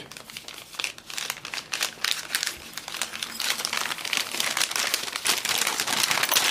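Paper rustling and crinkling as hands handle and crumple it: a dense run of small crackles that gets busier after the first couple of seconds.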